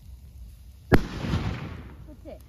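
A single loud bang from the burning bamboo-and-straw meji bonfire about a second in, followed by a fading rush of crackling noise.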